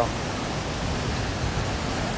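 Steady rushing noise of ocean surf and breeze on an open beach, even and unchanging.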